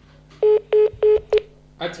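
Four short telephone beeps of one steady pitch in quick succession, the last one cut short, as a phone caller is put through, followed by a man saying "accha".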